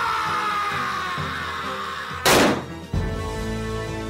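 A single loud handgun shot about two seconds in, a shot that misses, set against dramatic background music that swells again right after it.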